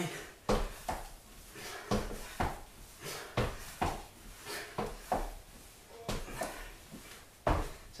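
A quick, uneven series of thuds, about two a second, from feet landing on a wooden floor during explosive TRX sprinter-start jumps.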